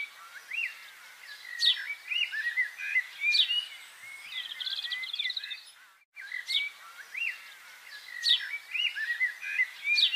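Small birds chirping and calling in short, high notes, with a rapid trill near the middle. There is a brief break about six seconds in, after which a similar run of calls follows.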